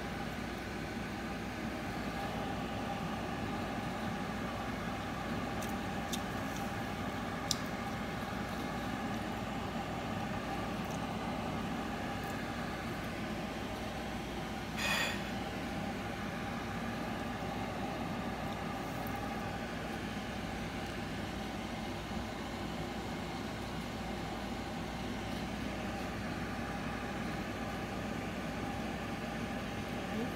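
Steady mechanical hum with a few faint held tones, with a brief hiss about halfway through.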